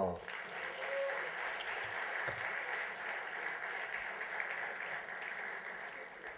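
Audience applauding, a steady round of clapping that tapers off slightly near the end.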